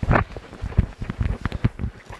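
Hands brushing forest litter off a mushroom: irregular rustling and scraping, with low thumps.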